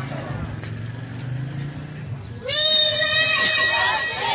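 A young girl's voice through a microphone and loudspeaker. She starts singing about two and a half seconds in, sliding up into a long held note. Before that there is only a low hum and faint background noise.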